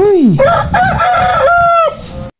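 A rooster crowing, with several rising-and-falling syllables ending on a long held note that cuts off near the end.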